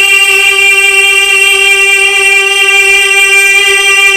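A man's voice holding one long sung note steady, without a break, into a stage microphone: a drawn-out vowel in a Bengali Islamic gojol.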